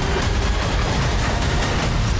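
Movie trailer soundtrack between lines of dialogue: a dense, bass-heavy rumble of score and sound effects.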